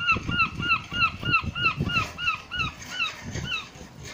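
Gull calling: a rapid run of short, arched, repeated calls, about four a second, that fades out near the end.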